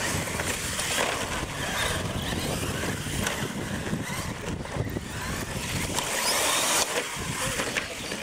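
Radio-controlled monster trucks racing flat out side by side: motors whining up as they accelerate, over a steady rush of tyre and drivetrain noise. The hiss grows brighter near the end.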